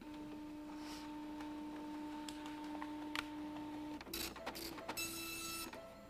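Dot-matrix printer printing an AED code summary report on continuous-feed paper. A steady hum with scattered clicks for about four seconds gives way to choppy bursts of print-head buzzing near the end.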